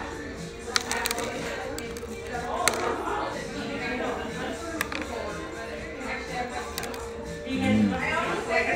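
Background music with faint chatter in a restaurant, broken by a few sharp clicks and crunches as a batter-coated mozzarella corn dog is bitten into and chewed.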